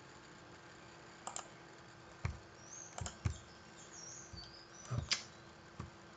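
Computer mouse clicks, about eight scattered short clicks, some in quick pairs, over a faint steady hum, as items are picked from a menu on screen.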